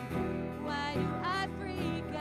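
Live worship song: voices singing to piano and strummed acoustic guitar.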